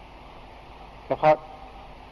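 A pause in a man's talk with low steady background hiss, then one short loud spoken word about a second in.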